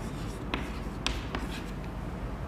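Chalk writing on a blackboard: faint scratching strokes with a few sharp taps of chalk on the board.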